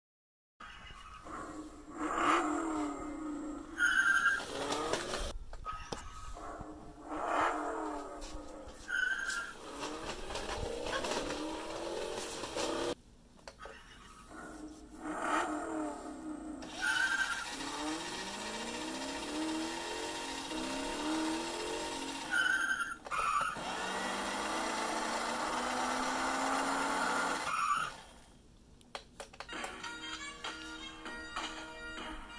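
Battery toy car's built-in electronic sound effects played through its small speaker: recorded engine revs that sweep up and down, with tire-screech noise and several short beeps.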